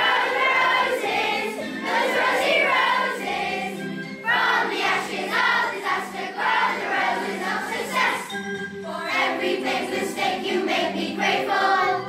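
Children's choir singing, phrase after phrase, with short breaths between phrases about four seconds in and again around eight and a half seconds.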